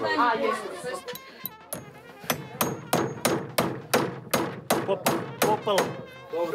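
A hammering tool striking a wooden barn post, a dozen or so sharp blows at a steady pace of about three a second.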